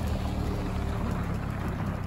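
A vehicle engine running steadily, a low hum that stops abruptly at the end.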